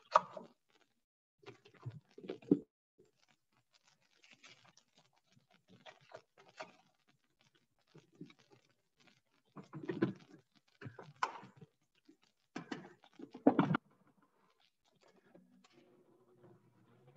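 Kitchen handling sounds: scattered light clicks and rustles of containers and packaging being handled, with a few soft thuds, the loudest about ten seconds and thirteen seconds in.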